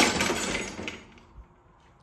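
Wire racks and cutlery basket of an open dishwasher rattling and clinking as a dog scrambles out over the lower rack. The clatter is loudest at the start and dies away after about a second.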